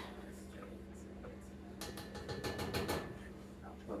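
Chopped raw bacon scraped off a wooden cutting board with a silicone spatula and dropping into an enamelled Dutch oven: a quick run of light clicks and taps beginning a little before halfway through. The pot is not yet hot enough for the bacon to sizzle.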